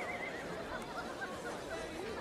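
A horse whinnying faintly, a wavering call near the start, over soft outdoor background ambience.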